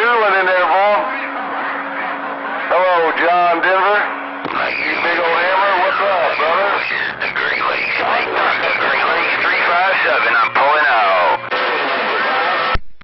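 Other stations' voices coming in over a Magnum CB radio's receiver, the men's speech narrow and crackly as received over the air. About four and a half seconds in, a noisier, fuller signal with a low hum takes over.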